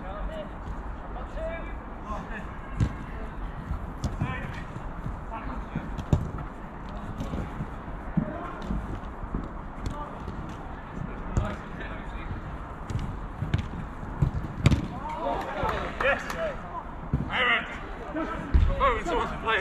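Small-sided football being played on artificial turf: scattered sharp thuds of the ball being kicked and players' shouts, the shouting heaviest near the end, over a steady low rumble.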